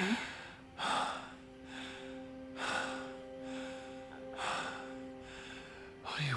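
A man breathing heavily in deep, gasping breaths, four of them a second or two apart, over a soft held chord of background music.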